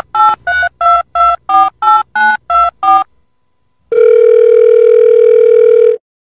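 Touch-tone telephone keypad beeps: about ten quick two-tone digits over three seconds, then a steady tone held for about two seconds. It is a phone-dialling sound effect, timed to a finger pressing a puppy's paw pads like buttons.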